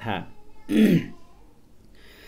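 A man finishes a spoken word, then clears his throat once, briefly, a little under a second in.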